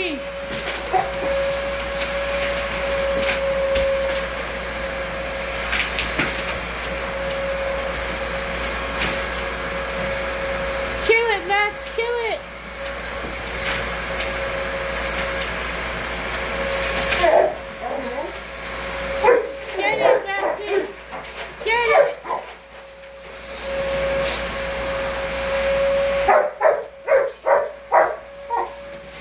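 A vacuum cleaner motor runs with a steady whine while a Rottweiler barks at it in short bursts, a few a little before the middle and many more in the last third. The vacuum's whine drops out briefly twice near the end.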